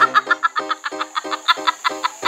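A young woman laughing hard in quick, rhythmic bursts, with music underneath.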